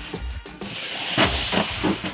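Background music, with a few short hissing scrapes, the loudest about a second in, as a plastic snake tub slides out along a metal rack.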